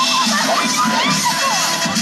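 Young audience cheering and shouting, many voices rising and falling, over dubstep music with a steady bass.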